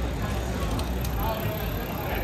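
Busy pedestrian-street ambience: indistinct chatter of passersby over a steady low rumble.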